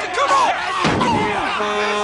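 Street brawl: men shouting and yelling over one another, with sharp thuds and slams of blows. A steady held tone comes in past the middle.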